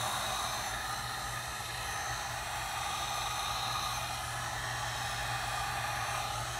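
Heat gun running on a low heat setting, its fan blowing a steady rush of air with a low hum underneath.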